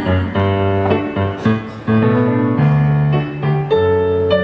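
Yamaha digital stage piano playing an accompaniment passage of sustained chords that change about once a second.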